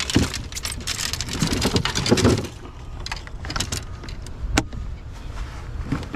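Fishing rods and gear clattering and rattling on a boat deck as they are handled. There is a dense rush of rattling for the first two seconds or so, then scattered clicks and knocks, with one sharp tick near the middle.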